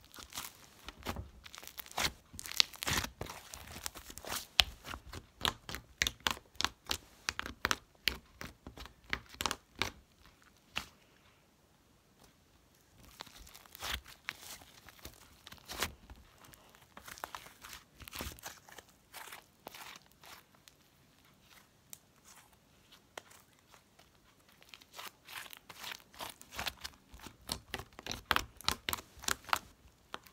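Light-green slime being kneaded, squeezed and stretched by hand, giving rapid clicking, popping and crackling in bursts with short pauses between them.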